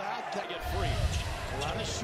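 Broadcast audio of a basketball game: a commentator talking over arena crowd noise, with a basketball bouncing on the court. A low rumble rises about half a second in.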